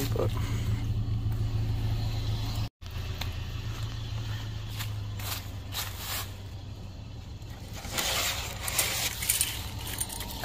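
A vehicle engine idling steadily with a low hum. A few sharp clicks come about five seconds in. Near the end there is louder clatter and rustling as tubular metal chairs are picked up and carried.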